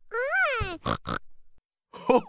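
A cartoon pig character's voice: one pitched call that rises and falls, followed by two short snorts.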